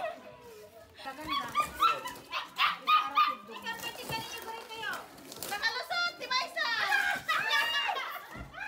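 Puppies yapping and whining, eager for food, under a woman's talk.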